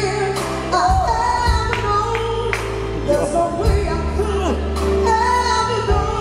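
A woman singing pop/R&B with a live band: she holds and slides long vocal notes over sustained bass notes and occasional drum hits.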